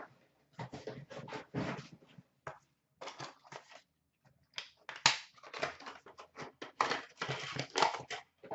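Cardboard and plastic packaging of a hockey card box being handled and unpacked by hand: irregular rustling, crinkling and scraping, loudest about five seconds in.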